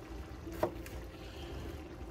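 A chef's knife slicing through green bell pepper and striking a plastic cutting board, one sharp chop a little past halfway through.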